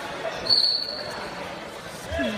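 Wrestling referee's whistle, one short shrill blast about half a second in, over the murmur of spectators in the hall.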